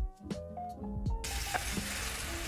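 Background music with a beat. About a second in, the sizzle of a pancake frying in oil in a nonstick pan comes in suddenly and carries on under the music.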